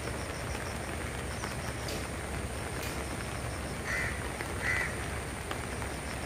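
Steady rush of heavy rain and the flooded river, with a bird calling twice, two short calls under a second apart, about four seconds in.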